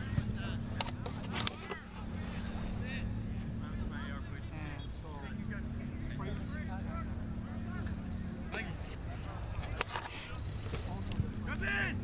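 Scattered distant shouts and calls from soccer players and sideline spectators over a steady low hum, with a few sharp knocks along the way.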